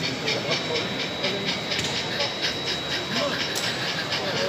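Sound-equipped model steam locomotive chuffing steadily, about five hissing chuffs a second, over background chatter of voices.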